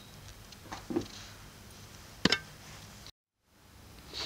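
Quiet room hum with two short knocks, about a second in and just past two seconds in, then an abrupt cut to dead silence for a moment shortly after three seconds, where the recording is edited.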